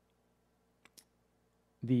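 A pause in a man's speech with a faint steady hum, broken by two short faint clicks about a tenth of a second apart a little under a second in; his voice resumes near the end.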